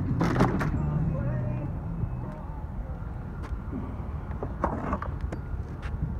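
A vehicle engine idling with a steady low hum that fades out about two seconds in. A quick burst of clicks and knocks comes near the start, with scattered single clicks after.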